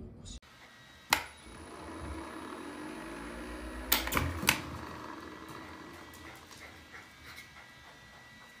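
Automatic dog ball launcher: a click about a second in, then its motor humming and rising in pitch for a few seconds before a sharp thunk and two quick knocks close behind it, as the tennis ball is thrown and lands.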